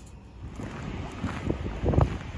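Wind buffeting the camera microphone outdoors, a gusty low rumble that grows stronger about half a second in.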